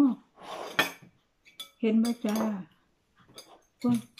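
A metal spoon clinking against dishes: a few sharp, short clinks, one about a second in and two more shortly after, with a couple of faint clicks later.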